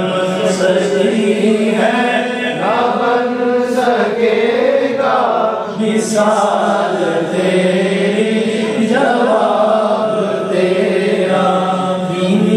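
A man singing a naat in long, drawn-out melodic lines that glide slowly up and down without pause.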